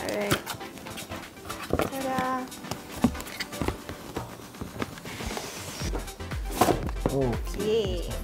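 Cardboard graphics-card box being handled and unboxed, with scattered taps and scrapes of cardboard and a brief sliding hiss about five seconds in as the printed outer sleeve comes off the inner box.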